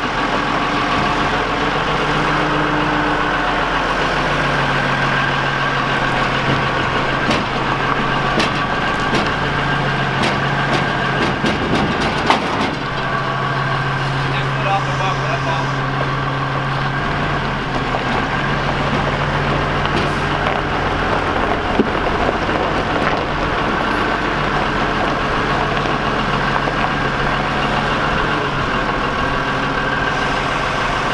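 Large Hyster forklift's engine running while it moves a bus on its forks, the engine note stepping up and down in pitch as it works. A scatter of clicks, then one sharp knock about twelve seconds in.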